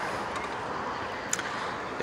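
Steady, even outdoor background hiss, with a single faint click about a second and a half in.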